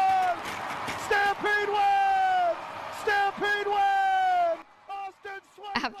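Hockey play-by-play announcer's goal call: several long, drawn-out shouts, each held on one pitch and falling off at its end. It fades out shortly before the end.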